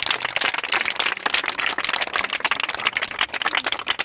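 A group of schoolchildren applauding, many hands clapping at once in a dense, irregular patter.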